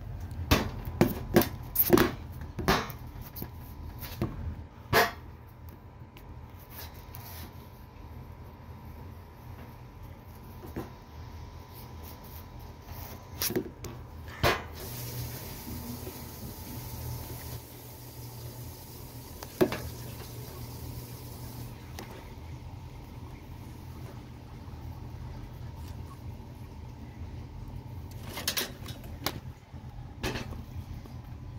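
Scattered knocks and bumps from handling and setting things up: a cluster in the first few seconds, a few more later, over a steady low hum.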